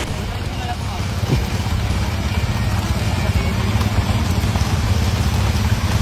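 A quad bike (ATV) engine running steadily with a low drone, gradually getting louder.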